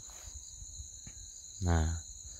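Steady, shrill insect chorus: a continuous high trill at two pitches that holds unchanged throughout.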